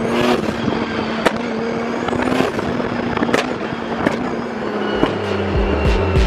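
Nissan 200SX (Silvia) turbocharged engine running on the road, with about five sharp exhaust pops spread roughly a second apart. These are the pops and bangs ("popcorn") of a newly tuned ECU map that fires them above 4000 rpm. Near the end the engine note drops lower.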